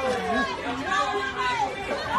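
Several voices talking over one another in overlapping, indistinct chatter.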